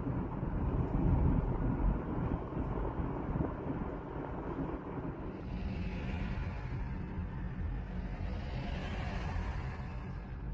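A freight train of tank cars rolling past, a steady low rumble with wind buffeting the microphone. About five seconds in it cuts to quieter road noise heard from inside a moving car.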